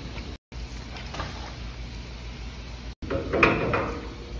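Metal door of a rug-drying centrifuge drum being shut and clamped, with a short clatter near the end, over a steady low hum.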